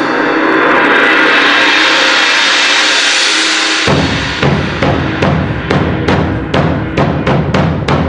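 Percussion quartet playing: a sustained ringing wash with held tones swells for about four seconds, then breaks off into a steady run of drum strikes, two to three a second.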